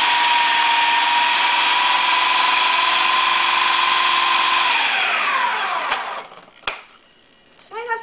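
Food processor motor running steadily with a whine, blending a thick mix of cream cheese and brown sugar, then switched off about four and a half seconds in and winding down with a falling pitch. A sharp click follows near the end.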